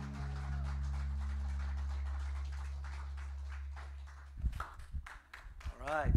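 The final chord of a worship song ringing out on keyboard and bass guitar, low held notes fading slowly. About four seconds in they give way to a few irregular low thumps and knocks.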